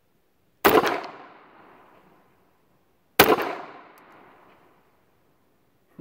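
Two shots from a Bersa Thunder .380 pistol, about two and a half seconds apart. Each shot rings out and fades over about a second and a half.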